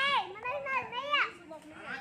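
Players shouting loudly: several high, rising-and-falling yells in the first second and a half, then quieter calls.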